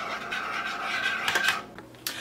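A spoon stirring a drink in a ceramic mug, scraping around the inside with a few light clinks. The stirring stops shortly before the end.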